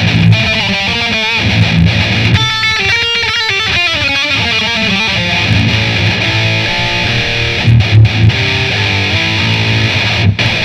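Ibanez RG seven-string electric guitar played as metal, with low riffs and a spell of quick single-note runs from about the third to the fifth second.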